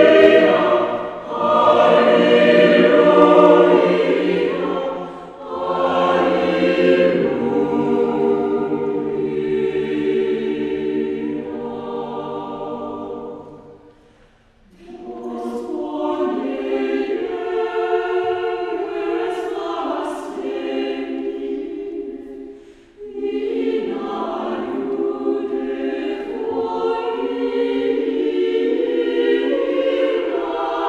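Mixed choir singing a cappella, in phrases with short breaks between them. A near-silent pause falls about halfway through, and after it the singing resumes without the low bass notes.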